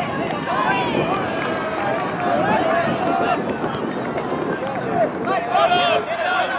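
Several voices shouting and calling out over one another throughout, players and sideline teammates calling during a point of ultimate frisbee.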